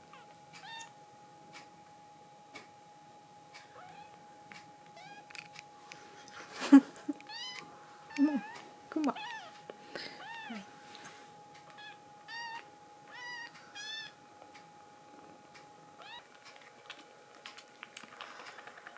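Young kittens mewing, a string of short high-pitched mews with the loudest about seven seconds in, trailing off after about fourteen seconds.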